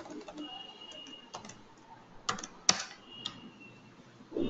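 Computer keyboard being typed on: scattered single keystrokes, with two louder strokes a little past halfway.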